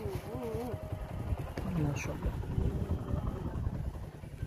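Wind rumbling on the microphone, a low unsteady buffeting, with faint voices in the background.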